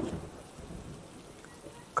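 Faint, steady rain falling.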